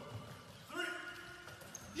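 A man's voice counting 'three' in English, one long drawn-out word played over the hall's loudspeakers, faint and echoing.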